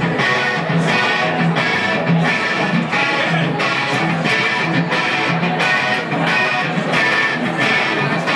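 Guitar playing a steady, repeating strummed figure, live rock music.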